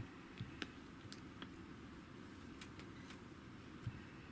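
Quiet room noise with a few faint, light clicks and taps as two digital audio players are handled and held side by side.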